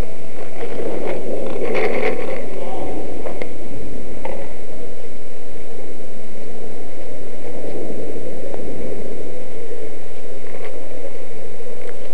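Indistinct voices over a loud, steady rumbling noise, with a few sharp clicks scattered through.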